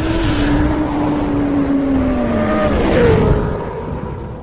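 Motorcycle engine sound effect, its pitch sliding slowly downward and then dropping and fading near the end.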